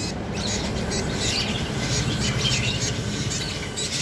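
Small birds chirping, with many short, irregular high calls over a steady low hum.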